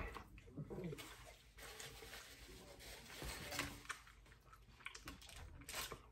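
Faint sounds of eating at a table: quiet chewing and the light rustle and clicks of hands handling foil-wrapped tacos, with a few sharper clicks near the end.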